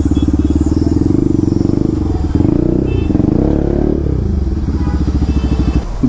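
Sport motorcycle's single-cylinder engine idling close by with a fast, even pulse; the engine note wavers slightly in the middle.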